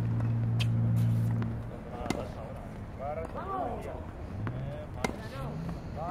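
A low steady motor hum for the first second and a half, then two sharp tennis-ball strikes about three seconds apart, with voices in between.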